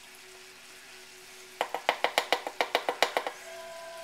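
A metal measuring spoon clicking in a quick, even run of about a dozen taps, roughly seven a second, starting about a second and a half in, as a tablespoon of flour is scooped and tapped out over a pan.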